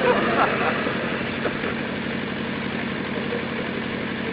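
A steady low hum runs through a pause in the talk, with faint background voices in the first second or so.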